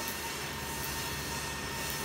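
Steady background rumble with a faint steady hum, the kind of constant machinery or traffic noise heard in a pause between speech.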